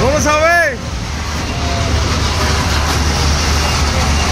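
A rider's long, held cry that wavers up and down and breaks off within the first second, then the steady low rumble and noise of a small fairground train ride running with riders aboard.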